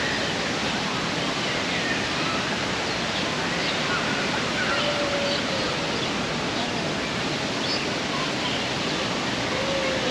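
Outdoor park ambience: a steady, even rushing noise with faint distant voices and short high chirps over it.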